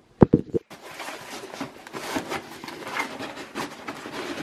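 Fabric storage boxes being handled and fitted into a dresser drawer: a few sharp knocks at the start, then steady rustling and scraping with small taps.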